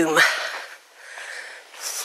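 The end of a woman's spoken word, then her breathing while walking: an audible breath out fading away, a quiet pause, and a short, sharp intake of breath near the end before she speaks again.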